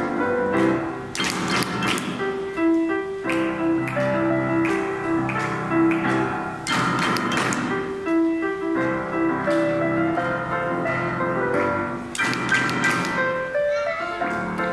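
Solo grand piano playing a famous 1938 Malay song from Tanah Melayu: a melody over full struck chords, with a loud chord every few seconds.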